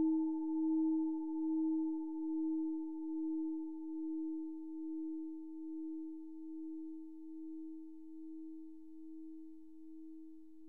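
A singing bowl (meditation bell) ringing out after being struck: one low, pure hum with a few higher overtones, slowly fading and wavering in loudness a little over once a second.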